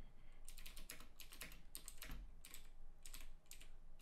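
Typing on a computer keyboard: a quick, irregular run of key clicks starting about half a second in.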